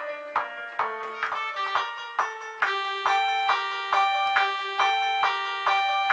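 A keyboard melody played on a software instrument from an M-Audio MIDI keyboard controller: short pitched notes, about two or three a second, repeating a looping figure.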